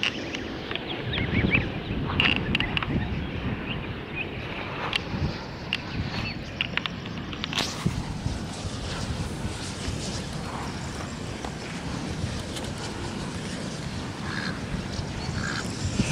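Ducklings and goslings peeping in many short, high calls, busiest in the first half, over a low rumble.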